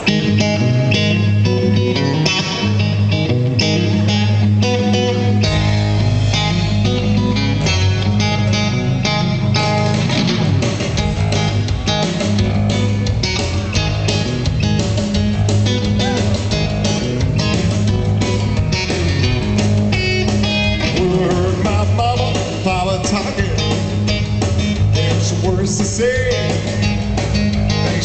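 Blues-rock trio playing live: amplified guitar over bass and drums in the song's opening, with deeper bass notes coming in about five seconds in.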